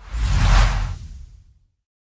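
Whoosh sound effect from an animated logo intro, with a low rumble under it. It swells within about half a second and dies away by about a second and a half in.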